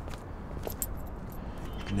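Light scattered clicks and faint jingling from footsteps and clothing as two people walk up and stop, over a low steady outdoor rumble.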